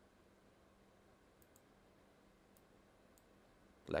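Near silence, with a few faint, sparse computer mouse clicks.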